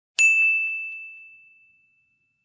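A single bell-like ding sound effect, struck once just after the start and ringing out on one clear high tone that fades away over about a second and a half. It is the notification-bell click of an end-screen subscribe animation.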